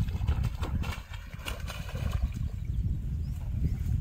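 Wind buffeting the microphone as a low, uneven rumble, with scattered rustles, clicks and splashes as a hooked rohu is hauled through floating water plants toward the bank.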